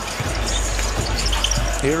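Basketball dribbled on a hardwood court, heard over the steady noise of an arena crowd.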